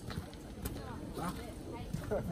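Several people talking at low level in the background, with one sharp click about two-thirds of a second in.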